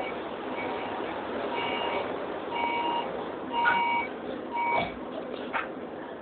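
Rail car's door warning beeper: an electronic beep repeating about once a second over steady train noise, with a single sharp knock near the end.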